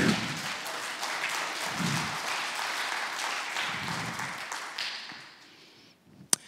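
Church congregation applauding, loudest at the start and dying away near the end.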